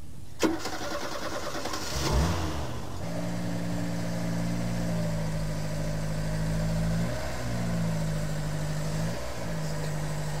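A short knock, then a car engine cranks and starts about two seconds in and runs steadily as the car is driven slowly up onto car ramps. The engine note dips briefly twice, near the middle and near the end.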